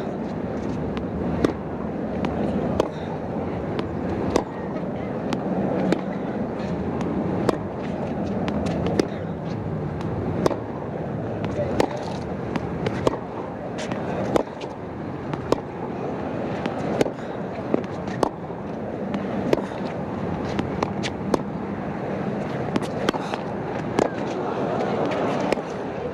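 A tennis ball struck back and forth by racquets in a long baseline rally, a sharp pock about every second and a half, with fainter bounces between, over a steady murmur from the stadium crowd.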